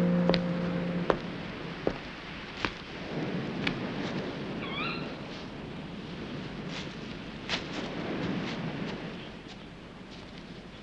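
Background music fading out within the first second. Then light snaps and clicks of someone moving through undergrowth, over a rustling hiss, with one short, high, wavering animal call about five seconds in.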